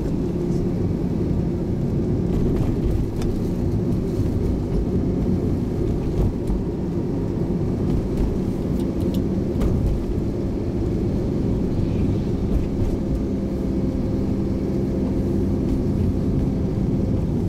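Vehicle engine running steadily with road noise, heard from on board while moving: a low drone that holds an even pitch and level throughout.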